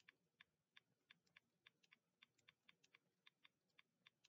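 Faint typing on a computer keyboard: light, irregular key clicks, about four or five a second.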